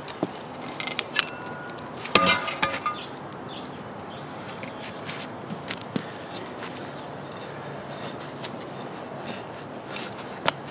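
Steel spade and digging fork clinking, with a cluster of metallic clinks and brief ringing about two seconds in. After that, scattered scrapes and crunches of the fork's tines loosening hard, dry, compacted clay subsoil, over a steady background hiss.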